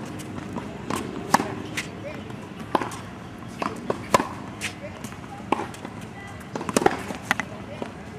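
Tennis balls being hit during groundstroke practice on a hard court: a string of sharp pops from racket strings striking the ball and balls bouncing, irregularly spaced, about a dozen in all.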